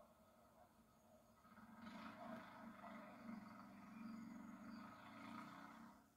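Near silence: a faint, muffled murmur from covert outdoor footage playing on a television, with distant men's voices barely audible.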